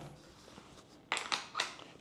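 A camera's mounting pin sliding into a Spider Holster belt clip and seating: a few sharp metallic clicks and scrapes over about half a second, starting about a second in.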